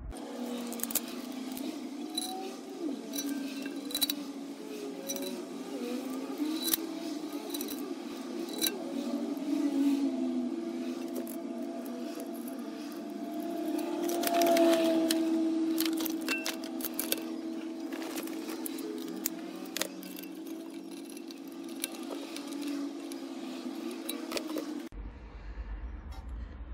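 Clicks and clinks of small steel hardware (an M5 bolt, washers and a Nylock nut) being fitted through a baffle plate in an aluminium rocker cover and tightened. The clicks sound over a steady background of music.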